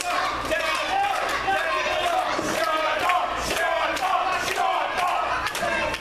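A small live wrestling crowd and the people around the ring shouting and yelling over one another, with a few sharp knocks mixed in.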